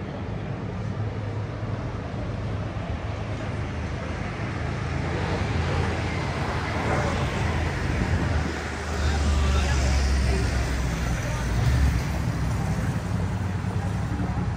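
Street traffic: passing cars and buses with a low engine rumble that grows louder in the second half, mixed with passers-by talking.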